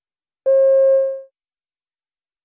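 A single steady electronic beep of under a second that fades out at the end: the cue tone marking the start of a recorded listening-test extract.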